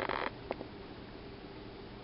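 A salt shaker shaken briefly over a pan of penne, then a single click, then faint kitchen room tone with a low hum.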